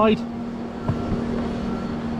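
Steady low machine hum over a haze of outdoor noise, with a couple of faint knocks about a second in.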